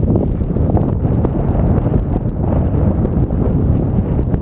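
Wind buffeting the microphone: a loud, steady, low rumble with no clear tones, and a few faint clicks.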